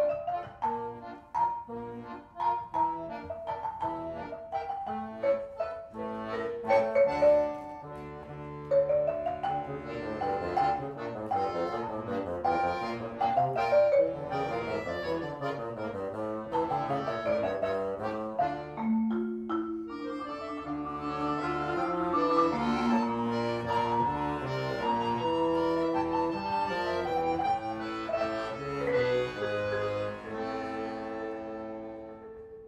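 Live trio of marimba, standard bass piano accordion and bassoon playing a contemporary chamber piece: quick marimba notes dominate the first part, and sustained accordion and bassoon tones come to the fore from about two-thirds of the way in.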